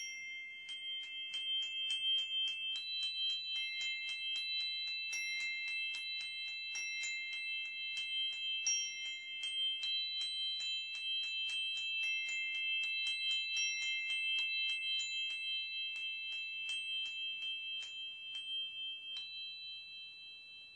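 Singing bowl played by circling a wooden mallet around its rim: several high ringing tones held steady, with many light clicks from the mallet against the rim, fading near the end.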